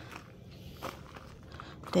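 A few soft footsteps on gravel, faint and irregular. A woman's voice starts speaking at the very end.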